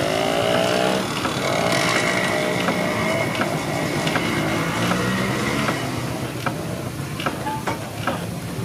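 1907 Hofherr & Schranz portable steam engine running, its flywheel turning, with a regular light clicking from its works. Over it, a motor's hum rises in pitch twice in the first three seconds, with a steady high whine about two seconds in.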